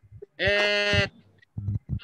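A person's voice holding a long, level hesitation sound, 'ehh', for just over half a second, with a few faint short sounds near the end.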